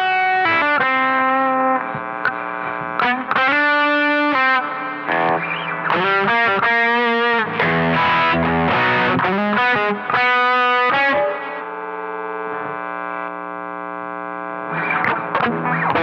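Electric guitar, a Fender Telecaster Deluxe, played through an overdrive pedal (a Duellist-clone dual drive) with a distorted tone. It plays short lead phrases and chords, and one chord is left ringing from about 11 to 15 seconds in.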